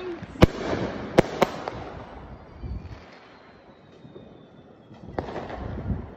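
Fireworks going off: three sharp bangs within the first second and a half, then a faint falling whistle, and another bang with crackling noise near the end.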